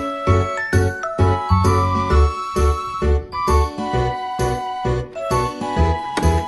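Background music with a steady beat, about two beats a second, under a melody.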